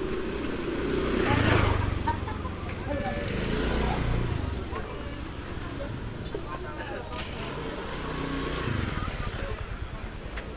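Motor scooters pass close by with their small engines running, loudest about a second in and again around four seconds, over the chatter of people's voices in a busy street market.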